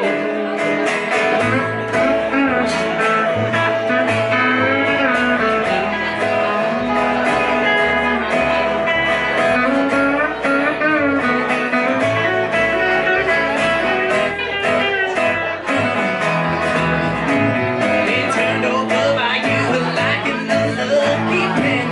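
Live small band playing a blues-country tune on electric guitar, plucked upright bass and acoustic guitar, with a steady bass line moving under bending guitar lines.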